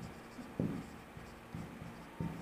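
Marker pen writing on a whiteboard: a few short, faint strokes as Devanagari letters are written.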